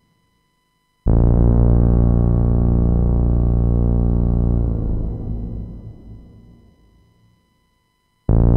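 Behringer K-2 analogue synthesizer (an MS-20 clone) sounding one loud, low, sustained note with a rich stack of overtones, starting about a second in and held steadily for about three and a half seconds, then fading out through a delay and reverb tail.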